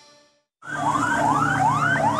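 Ambulance siren starting abruptly a little after music has faded out: fast repeated rising whoops, two or three a second, over a slower falling wail.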